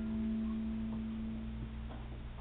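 A few held musical notes ringing on together in a quiet song introduction. A low note that began just before holds for about two seconds, while the higher notes stop about a second in.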